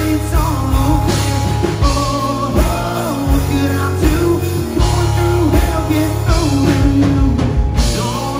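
Live rock band playing loudly: electric guitars and a drum kit, with a pitched melody line running over a steady beat.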